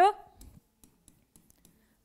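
Faint, scattered clicks of a stylus tapping on a digital pen display while an equation is written by hand. A spoken word trails off at the very start.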